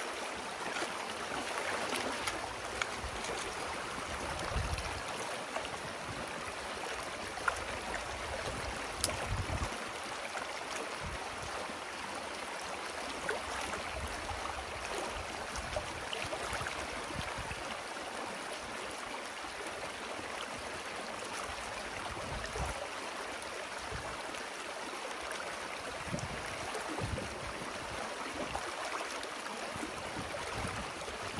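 Muddy creek water rushing through a breach opened in a beaver dam: a steady churning, gurgling flow as the dammed water drains out.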